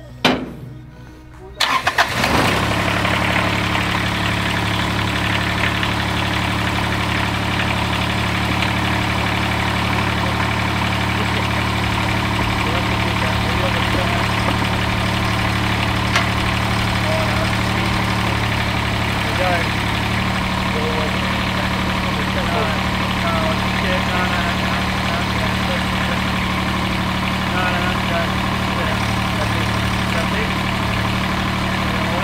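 A few clanks of metal loading ramps, then the diesel engine of a Toro Greensmaster 3250-D ride-on greens mower starting about two seconds in and idling steadily. Its note shifts slightly about two-thirds of the way through.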